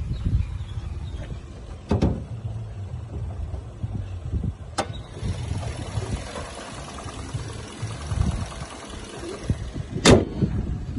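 Bonnet of a 2008 Toyota Allion opened with two sharp clicks of its latch about 2 and 5 seconds in. After that the running engine is heard more plainly through the open bay, and the bonnet shuts with a loud thump at the end.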